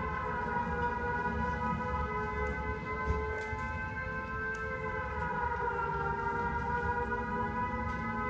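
Air-raid siren sound effect played over a theatre's speakers: a steady wailing chord of tones that sags in pitch about five seconds in and climbs back near the end.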